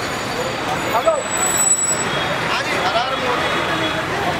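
Busy street: a steady wash of traffic noise with the voices of a crowd talking around the microphone, and a thin high whine lasting about a second, starting about a second in.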